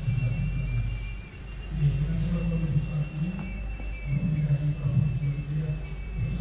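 A man humming low and wordlessly, in wavering phrases about a second long, over a faint steady high-pitched whine.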